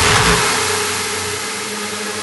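Electronic dance music breakdown: the kick drum drops out just after the start, leaving a sustained noisy synth wash over a faint low drone that slowly fades.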